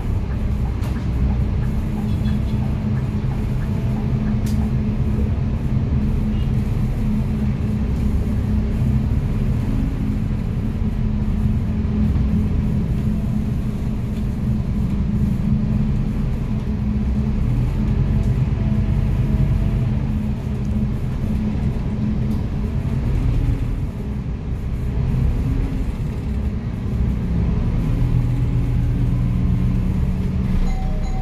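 Inside a city bus moving slowly in traffic: a steady low drone from the drivetrain over road rumble, its pitch shifting a few times in the last third as the bus changes speed.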